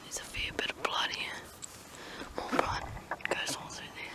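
Hushed whispering between hunters, with scattered short rustles and snaps of movement through grass and scrub.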